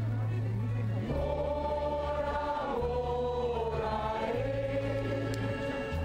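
A mixed choir of men and women singing a slow song in long held notes, over deep instrumental bass notes that change every second or so.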